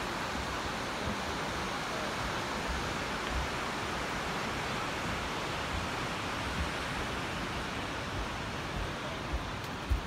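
Steady hiss of ocean surf breaking along the beach, with wind rumbling on the phone's microphone. A couple of short thumps come near the end.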